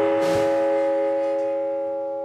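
Amplified blues harmonica holding one long chord into the microphone, fading slowly as the song's final note.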